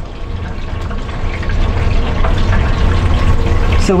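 Oil bubbling in a chip-shop deep-fat fryer: a steady hiss over a low hum of the frying range, growing louder about a second in.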